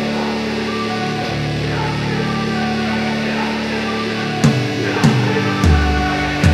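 Background music: held chords, then sharp beats coming in about four and a half seconds in, three of them roughly half a second apart.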